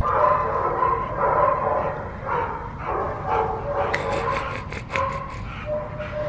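Dogs in a kennel barking, yipping and whining in repeated short calls, with a few sharp clicks about four to five seconds in.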